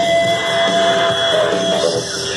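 Electric guitar played through a portable amplifier speaker: a long held lead note that moves to a new pitch about one and a half seconds in.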